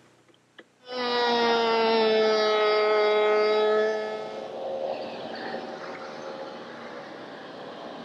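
Table-mounted router with a sash-making bit starts suddenly about a second in with a steady whine. About four seconds in the sound drops and turns rougher as the bit cuts the cope on the end of a pine rail, and the whine fades away.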